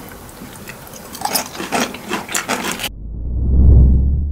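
Crisp crackling and rustling of fresh salad leaves being handled in a glass bowl, a rapid irregular run of small clicks. About three seconds in it cuts off and a deep rumble swells up, loudest near the end.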